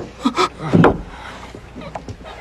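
Short fragments of a person's voice in the first second, then a quieter steady background.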